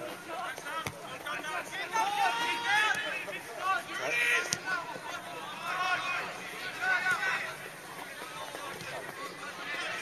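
Shouts and calls from several men at once, players and touchline spectators at a football match, going on throughout. A couple of sharp knocks, about a second in and near the middle, fit the ball being kicked.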